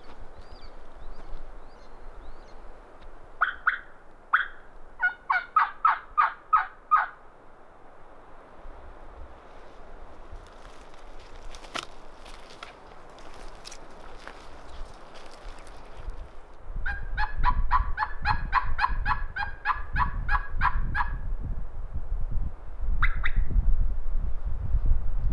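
Turkey yelping in two loud runs of evenly spaced notes, about four a second: a short run a few seconds in and a longer run after the middle, then a single yelp near the end. Footsteps through dry forest litter sound under the second half.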